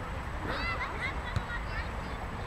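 Children shouting on a football pitch in short high-pitched calls, with a single sharp knock of a football being kicked a little past halfway, over a low steady rumble.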